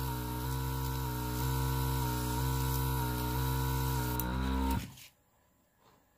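Small electric airbrush compressor running with a steady hum and a slight regular pulsing, set to full pressure. It stops suddenly about five seconds in.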